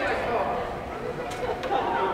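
Indistinct voices of people chatting in an ice rink during a stoppage in play, with two faint clicks a little past the middle.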